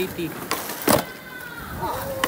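A skateboard deck knocks sharply once on concrete about a second in, after a lighter tap. A faint whir follows, slightly falling in pitch, as the board's wheels roll.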